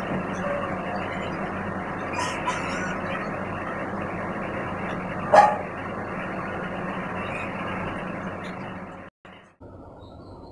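Steady rushing background noise, with one sharp click about halfway through and a brief cut-out near the end.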